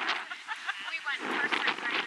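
Voices of several people talking and calling out, too far off for the words to be made out.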